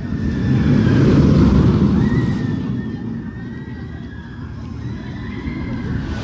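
Steel roller coaster train running along its track, a loud rumble that swells about a second in and then slowly fades, with a faint whine above it.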